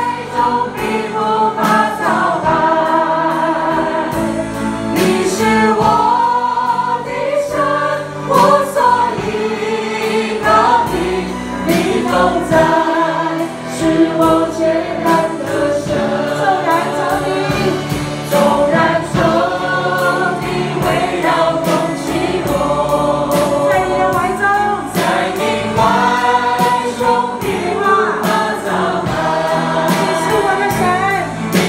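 A worship team and congregation singing a Chinese praise song together over a live band, with drum hits running through it.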